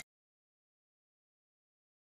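Complete silence: the sound track is blanked out.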